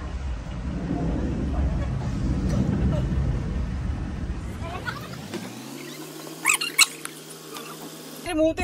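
Wind rumbling on the microphone for about the first five seconds, a low unpitched noise that then drops away. Near the end come two short, sharp, high-pitched sounds.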